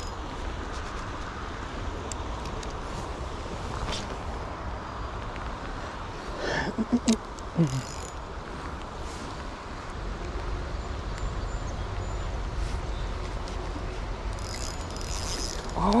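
Steady rush of a flowing river with a low wind rumble on the microphone. A short murmured voice comes about seven seconds in.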